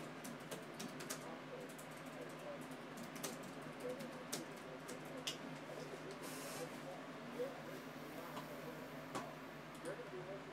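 Typing on a computer keyboard: irregular light key clicks, several a second, with short pauses.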